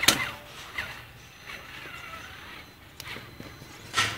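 Traxxas Summit 1/10 electric RC truck crawling over dirt and rocks: sharp knocks and clatter from its wheels and chassis, the loudest right at the start and another at the end, with a faint motor whine rising and falling in between.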